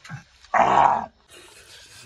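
A single short, loud animal-like growl lasting about half a second, starting about half a second in.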